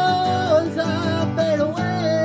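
A man singing over a strummed steel-string acoustic guitar: a held sung note at the start, then a short wavering line.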